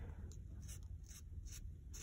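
Felt tip of a Pentel water-based marker scratching on paper in a series of short, faint strokes as eyelashes are drawn along the lash line.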